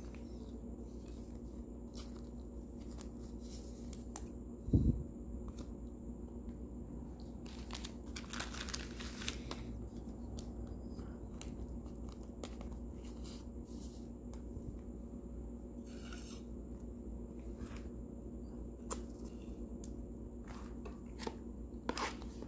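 Soft, scattered rustles and crinkles of a trading card being slid into a clear plastic sleeve and handled, over a steady low hum. One dull thump about five seconds in.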